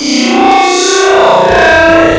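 Loud, heavily distorted electronic sound made of dense, shifting pitched tones, the audio warped by repeated effects processing. A rough low buzz joins about three-quarters of the way through.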